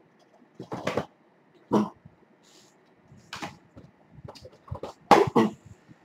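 A few short handling noises, clacks and scrapes of plastic DVD cases being picked up and moved about. The loudest come near the end.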